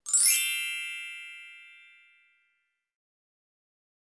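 A single bright, sparkling chime strikes once and fades away over about two seconds, against dead silence: an added sparkle sound effect.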